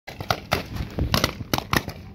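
Paintball markers firing: a string of sharp pops, irregularly spaced, about seven in two seconds.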